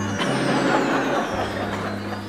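A dense rushing noise over held low notes of music. The low notes break off twice and come back, and the whole sound slowly fades.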